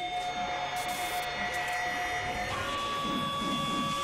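Soundtrack of held electronic tones over a grinding, mechanical-sounding texture; the tones shift to new pitches about two and a half seconds in.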